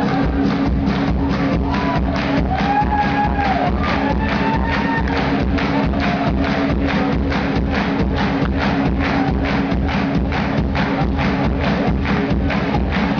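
Live electronic rock band playing through a club PA: a steady driving beat of about three hits a second over a held low bass drone.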